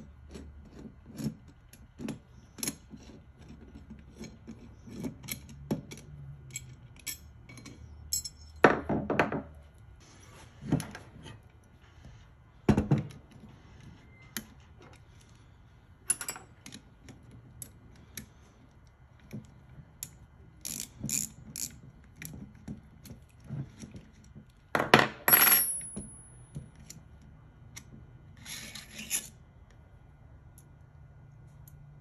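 Metal carburetor parts and a screwdriver clicking, tapping and scraping on a wooden workbench as a twin Keihin CV carburetor rack is taken apart by hand. A few louder scrapes and clunks stand out among the light clicks.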